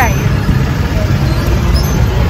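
Road rumble and wind buffeting the microphone while riding in an open-sided rickshaw through city traffic, a steady loud low rumble.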